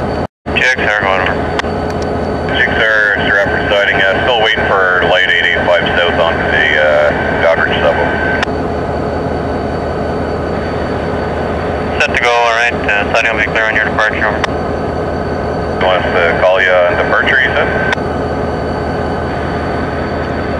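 Diesel freight locomotives idling at a standstill, a loud, steady engine drone. The sound cuts out for a split second just after the start.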